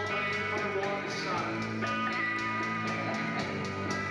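Live rock band playing with electric guitars, bass and drums, the drum beat steady.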